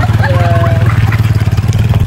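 Motorcycle-and-sidecar tricycle's engine running steadily under way, a loud, low, even drone that stops abruptly at the end.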